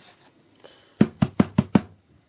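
A canvas-panel artboard with pastel paper taped to it knocked against the tabletop five times in quick succession, about five knocks a second, shaking loose pastel dust.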